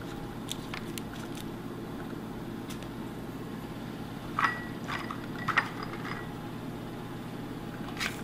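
Steady low hum of kitchen background noise, with a few light clicks and knocks, most of them a little past halfway through.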